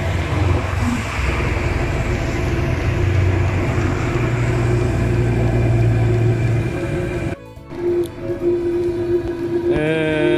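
A 12 V, 2 kW FF fuel-fired air heater running on a bench test, its unmuffled exhaust pipe giving a loud, steady rumble over the blower's rush. About seven seconds in, the sound cuts out for a moment and then returns as a steadier running hum with a constant whine.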